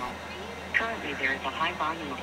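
A person's voice talking in short phrases over a low steady hum.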